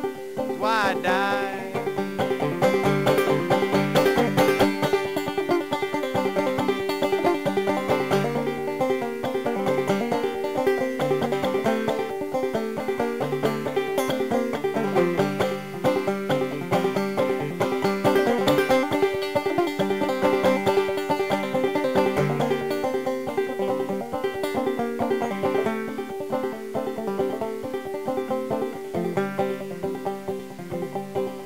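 Banjo picked in a steady, driving rhythm as an instrumental break, with a brief wavering high note about a second in.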